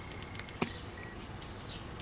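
Quiet room background with faint handling noises and one small click about half a second in, from hands working beading thread and a stackable stamp ink pad.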